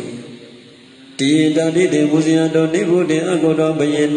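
A Buddhist monk's voice chanting Pali verses in a steady recitation tone. It breaks off briefly and starts again abruptly about a second in.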